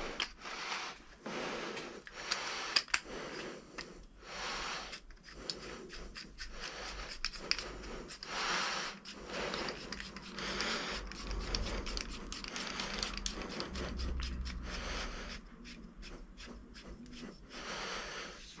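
Hands screwing the parts of a Monorim suspension fork back together: irregular small clicks, rubs and scrapes of the metal parts being handled and turned.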